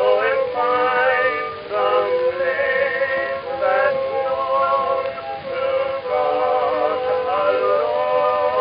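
A male tenor duet singing a sentimental ballad in harmony on a 1919 acoustic-era phonograph recording.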